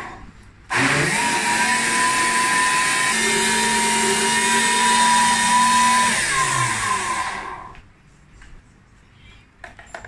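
Countertop electric blender running for about seven seconds as it blends tahini sauce. It starts about a second in, and its motor note shifts around three seconds in. It then switches off and winds down. A few light clicks follow near the end.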